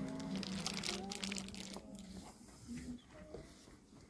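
A children's choir holding soft, sustained notes that die away about two seconds in, with a crinkling rustle, like folders or paper being handled, around the first second. After that only faint scattered sounds remain.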